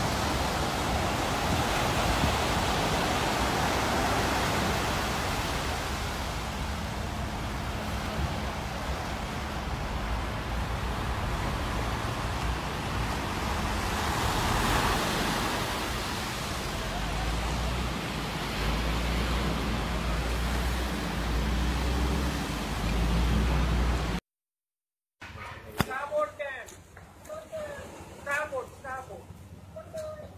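Steady rushing noise of surf washing in at the waterline beside a grounded bulk carrier's hull, with a low rumble underneath. It stops abruptly about 24 seconds in, and voices follow near the end.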